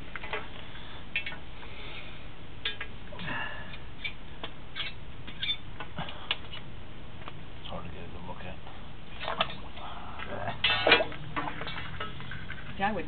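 Scattered light clicks and taps over steady low room noise, with short stretches of muffled talk; the loudest is a brief burst of voice near the end.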